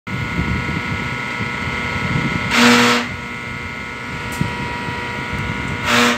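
Truck air brake system letting out two short hisses of air, each under half a second and with a buzzing tone in them, about three seconds apart. A steady hum with a thin high whine runs underneath.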